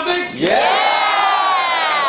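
One person's long, loud yell, sweeping up in pitch and then sliding slowly down, held for about a second and a half.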